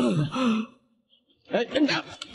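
A man's wordless grunts and straining cries during a scuffle, in two bursts with a short silence of under a second between them.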